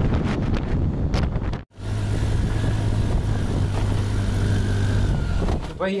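Road and wind noise from inside a moving vehicle on a highway. After a brief dropout about two seconds in, a steady low engine drone runs until a voice starts near the end.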